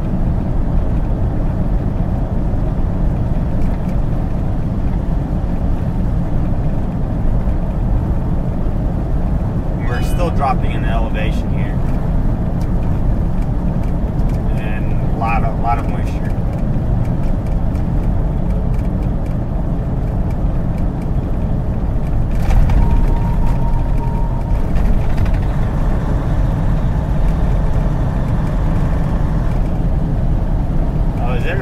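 Steady low drone of a semi truck's engine and road noise heard inside the cab while cruising on the highway.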